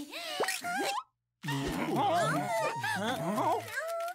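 Cartoon soundtrack: sliding, wordless character vocalizations, cut to dead silence about a second in, then upbeat music with a steady bass line and more vocalizing over it.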